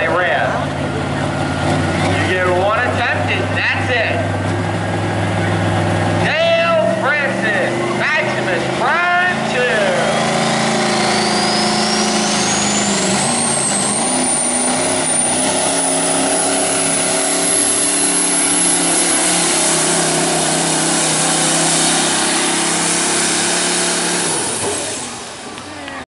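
Modified semi-truck diesel engine under full load pulling a weight sled. A high whine rises steadily in pitch from about ten seconds in until it levels off very high, and the engine falls away near the end.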